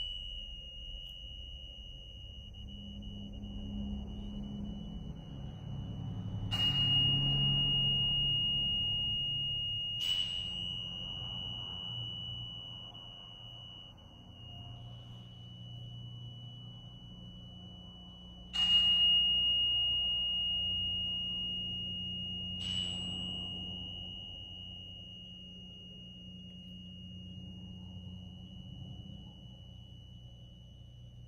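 A metal tuning fork struck four times, each strike bringing back a loud, high, steady ringing tone that fades slowly until the next strike.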